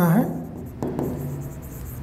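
A marker pen writing a word on a board: faint scratchy strokes, a few short separate ones, after a spoken word ends at the start.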